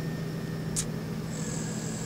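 Steady low mechanical hum of outdoor background noise, with a brief hiss just under a second in and a faint high-pitched whine starting past the halfway point.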